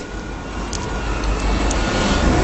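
A steady rumbling noise that grows gradually louder, with a faint thin tone running through it.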